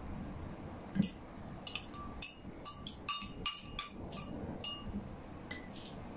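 A spoon or stirrer clinking against the inside of a glass tumbler of water about a dozen times at an uneven pace, as an eraser is stirred in to test whether it dissolves.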